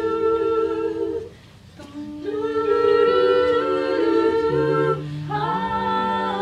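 Female a cappella group singing close-harmony chords, held long, with a short break about a second in; the chords come back over a low bass note that steps down near the end.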